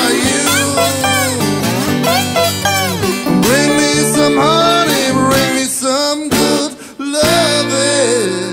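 Acoustic lap slide guitar played with a bar, in an instrumental passage of plucked notes that glide up and down in pitch. A held note rings out about seven seconds in.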